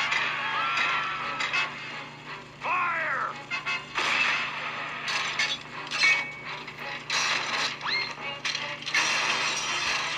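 Cartoon sound effects of a machine on the rampage: busy mechanical clanking, ratcheting and knocking over music, with a couple of short whistle-like pitch glides rising and falling, one a little before the middle and one near the end.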